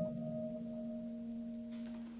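Slow ambient piano music: a new chord is struck at the start, and its notes ring on and slowly fade.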